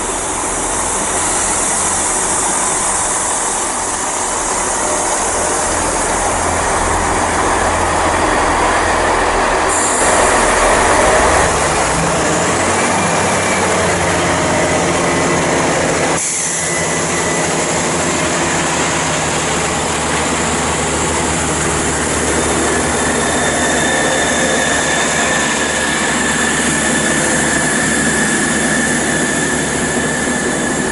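Class 166 diesel multiple unit running along the platform close by: its diesel engines and wheels on the rails make a loud continuous noise. A thin high squeal comes in during the later part.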